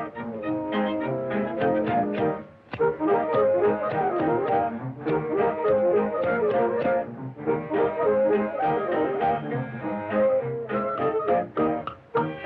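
Instrumental cartoon score playing a lively tune in short, quick notes, with brief breaks about two and a half and seven seconds in.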